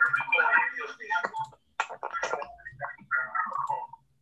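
Voices from a video call, in broken fragments with short gaps: the call's own earlier audio playing back on a loop about 23 seconds late, a feedback fault in the stream setup.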